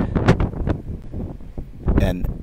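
Wind buffeting a phone microphone, a low rumble with a few short knocks.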